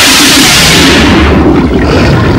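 Loud transition sound effect: a bright rushing whoosh that fades over the first second into a steady engine-like roar.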